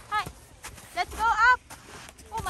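Young children's high-pitched shouts and squeals: a short cry near the start, another about a second in, then a longer, louder squeal that slides up and down in pitch.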